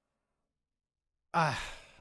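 Dead silence for over a second, then a man's drawn-out, breathy "uhh" that falls in pitch and fades out.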